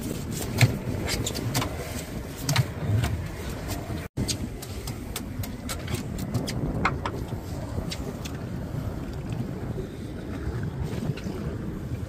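A few sharp knocks and thumps in the first few seconds, then a steady rush of wind and water around an open boat, with wind buffeting the microphone.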